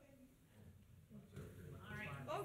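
Quiet meeting-room tone with faint off-microphone voices, which build into clearer talk near the end.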